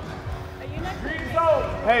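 Players' shouted calls across a large indoor sports hall, then a close shout of "Hey" near the end, over low rumbling handling noise on a phone's microphone.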